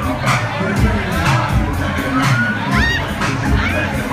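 Nightclub crowd shouting and cheering over loud dance music with a heavy, regular bass beat. A shrill rising whoop cuts through about three seconds in.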